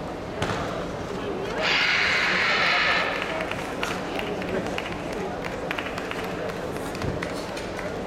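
Background voices in a large sports hall, with a sharp snap about half a second in as a karate athlete kicks. Just under two seconds in comes a loud hissing burst lasting just over a second.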